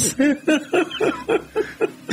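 A person laughing in a run of short, rhythmic chuckles, about five a second.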